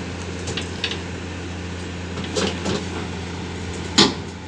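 Komatsu PC210LC hydraulic excavator's diesel engine running steadily as its steel crawler tracks climb onto a lowboy trailer, with scattered clanks and creaks from the tracks and undercarriage. A loud clank comes right at the end as the machine tips over onto the trailer deck.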